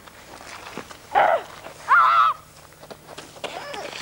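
Two short, loud, high-pitched vocal cries about a second apart, the first falling in pitch and the second wavering.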